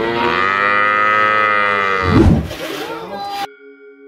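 A cow mooing: one long, steady moo lasting about two seconds, with a brief low rumble right after it as the call fades.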